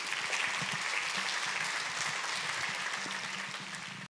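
A congregation applauding steadily, the clapping easing slightly near the end and then cutting off abruptly.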